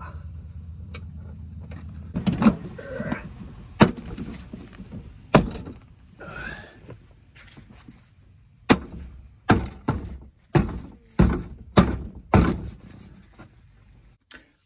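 Plastic trim panel being pressed onto the inside of a Honda Element's rear hatch. First comes a short scrape of plastic against the door, then about nine sharp snaps and thunks as the panel's retaining clips are pushed home. Most of them come in quick succession over the last five seconds.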